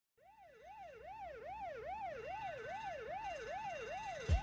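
A siren wailing in quick, even up-and-down sweeps, about two and a half a second, fading in from silence and growing steadily louder.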